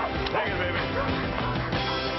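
Background music with a dog barking over it.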